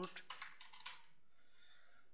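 Computer keyboard being typed on: a quick run of keystrokes through the first second.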